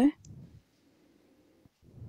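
A spoken word ends right at the start, then near silence with a faint low rustle near the end.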